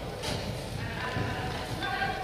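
Children's voices calling out across a large, echoing indoor hall. Footballs are being kicked and bouncing on artificial turf, with a couple of soft thuds in the second half.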